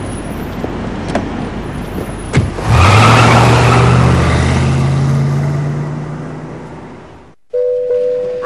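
Street traffic noise, then a car engine comes up loud about two and a half seconds in and fades away over several seconds as the car moves off. The sound cuts off abruptly near the end.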